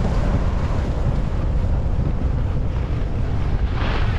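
Wind rushing over the microphone of a camera riding downhill fast, a steady heavy rumble with hiss. Just before the end comes a short, louder hissing swell, like an edge scraping the snow.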